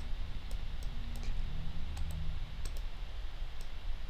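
About six sharp clicks of a computer mouse button, spaced irregularly, over a low steady background hum.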